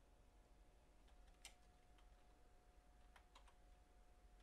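Near silence: room tone with a faint steady hum and a few faint, light clicks.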